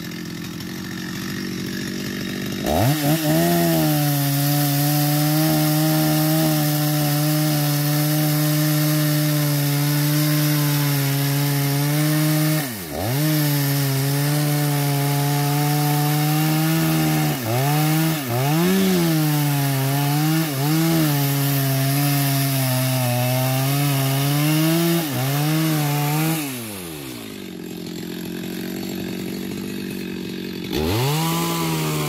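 Two-stroke petrol chainsaw making a felling cut through the base of a large eucalyptus trunk. It idles briefly, then revs up sharply about three seconds in and runs at full speed in the cut. The engine pitch dips several times as the throttle eases, and near the end it falls back to idle.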